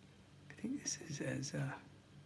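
Speech only: a man's voice speaks briefly, ending on an "uh", over a faint steady low hum.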